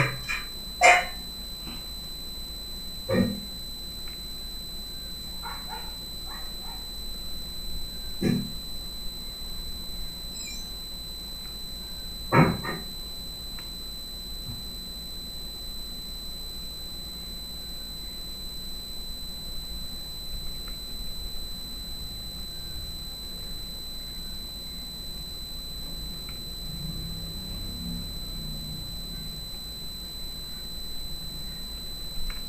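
An animal calling four times in short, sharp bursts, a few seconds apart, the loudest about twelve seconds in, over a faint steady hum.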